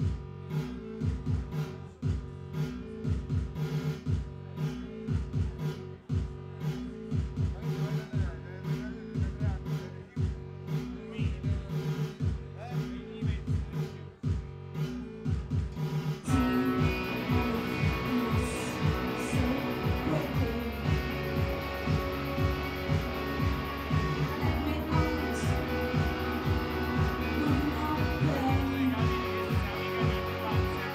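A live band starting a song. A steady pulsing low beat opens it, and the full band comes in, louder and denser, a little past halfway.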